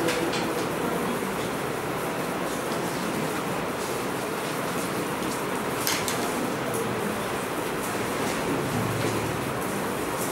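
Steady classroom background noise with a short sharp click about six seconds in.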